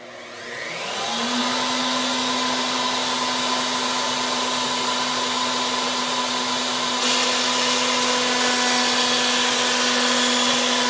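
Table-mounted router switching on, its pitch rising over about a second as it spins up to speed, then running with a steady high whine. About seven seconds in it gets louder and harsher as the eighth-inch roundover bit begins cutting the edge of the hardwood board.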